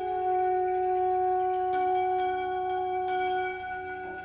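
Alphorn playing one long held note that fades away near the end.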